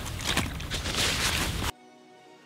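Close rustling and handling noise, irregular and crackly, as a carp is handled on an unhooking mat. It cuts off suddenly near the end and soft background music follows.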